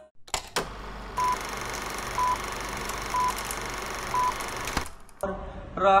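Four short electronic beeps at one pitch, about one a second, over a steady background hiss, after two clicks at the start. A man's singing voice begins near the end.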